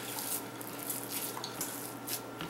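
Faint wet squishing and soft patting of bare hands pressing raw ground beef flat on a plastic cutting board.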